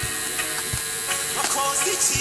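Live amplified band music between sung lines: a steady bass-drum beat, about one thump every three-quarters of a second, over a dense wash of sound.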